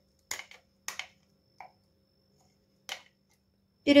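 A metal spoon clicking against the dishes as thick, freshly blended tomato adjika is scraped out of a plastic blender jar into a glass bowl: four short, sharp knocks spread over about three seconds.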